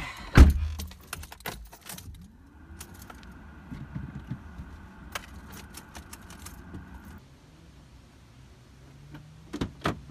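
Car keys jangling and clicking at the ignition, with a heavy thump about half a second in. A low steady hum comes in about two seconds in and stops around seven seconds in.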